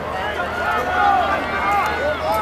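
Several people's voices talking over one another, a steady chatter in which no single speaker stands out.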